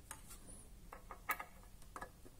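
A few faint clicks and taps from handling a small metal tin enclosure and its power leads, the loudest a little after a second in.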